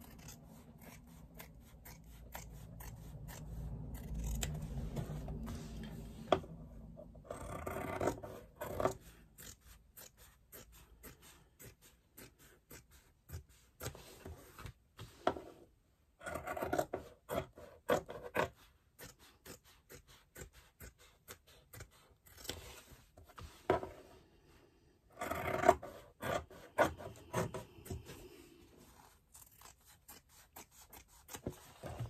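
Scissors cutting 2 mm headliner (scrim) foam along the edge of a faux-leather panel, trimming off the excess in runs of quick, short snips with brief pauses between runs.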